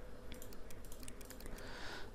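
Faint run of quick computer clicks, about six or seven a second, as the on-screen calculator buttons are entered.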